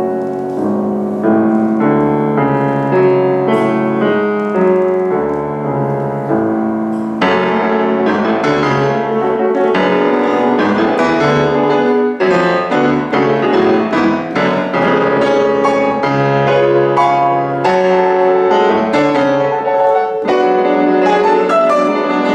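Grand piano playing classical music: slow held chords, then about seven seconds in a busier, brighter passage of quick notes running on.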